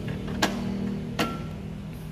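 Two sharp clicks, about three-quarters of a second apart, as the drip tray and its stainless wire grate are pushed home into a La Spaziale Mini Vivaldi II espresso machine, the second with a brief metallic ring. A steady low hum runs underneath.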